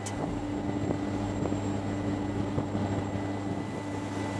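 A steady low drone: a constant hum with a faint rushing noise over it, unchanging throughout.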